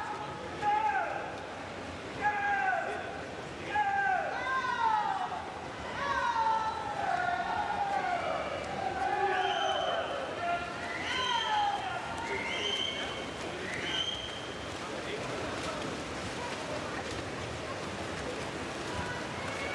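People at the pool shouting encouragement to the swimmers: a string of short calls, each falling in pitch, about one to two seconds apart, turning higher-pitched and dying away about three-quarters of the way through, over a steady background hiss.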